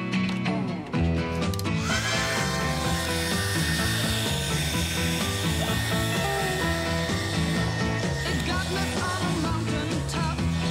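A handheld hair dryer switches on about two seconds in: its motor whine rises, then holds steady while it blows air into a zipped plastic bag of ice. Background music plays over it.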